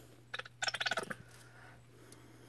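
A plastic squeeze bottle of gold acrylic paint squirting into a pour cup, giving a short, raspy sputter of under a second starting about a third of a second in. A steady low hum runs underneath.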